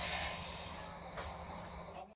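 Breath hissing through a half-face respirator: a long exhale that fades over about the first second, over a low steady hum.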